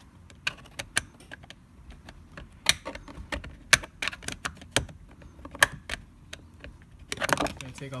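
Screwdriver tip clicking and tapping against the plastic door trim as the pin behind the inner door handle is pushed in and the handle pried out: a series of irregular sharp clicks, a few of them louder than the rest.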